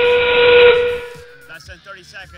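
Power Up arena sound cue marking a power-up being played, here red's Force: a loud, steady whistle-like tone with a hiss over it that fades out about a second in.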